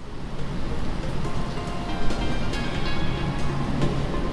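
Background music fading in over the first second and then running steadily, with a hiss-like wash beneath it.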